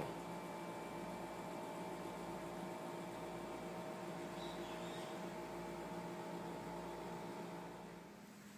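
A steady hum made of several fixed tones over a faint hiss, easing off slightly near the end.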